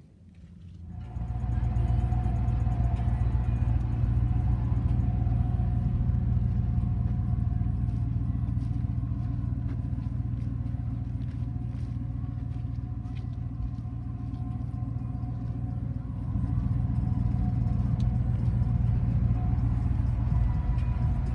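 Ford F-150 pickup's engine running steadily with a low rumble, coming in about a second in and growing a little louder near the end.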